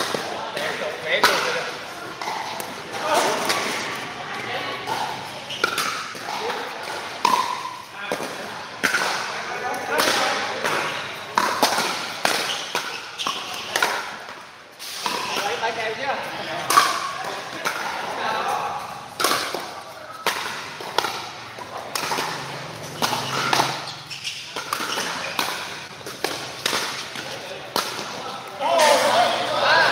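Pickleball rally: irregular sharp pops of paddles striking the hollow plastic ball, with ball bounces on the court, over background chatter.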